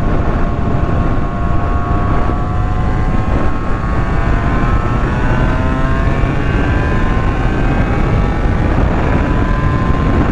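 Honda NS250R's two-stroke V-twin engine pulling under load, its pitch climbing slowly as the bike gathers speed, over heavy wind rush on the microphone.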